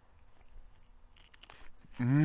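Faint chewing of a crispy tortilla wrap filled with chili, with a few soft crunches in the second half.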